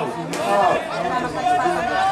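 Men's voices shouting and calling out on a football pitch during play, several voices overlapping.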